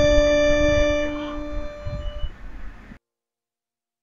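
Harmonica holding the final note of the tune, which fades away and cuts to silence about three seconds in.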